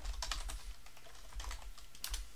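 Typing on a computer keyboard: a quick run of keystrokes, densest in the first second, as a short command is typed.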